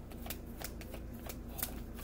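A tarot deck being shuffled by hand, a quick irregular run of soft card clicks and slaps.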